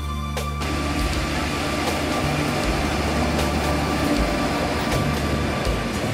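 EF66 electric locomotive hauling a container freight train past, a steady rumble of wheels on rail that takes over about half a second in, with soft background music underneath.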